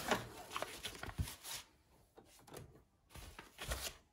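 Plastic embroidery hoop being unclipped and lifted off an embroidery machine's arm: a few scattered plastic clicks and knocks, one at the start, one about a second in and several near the end.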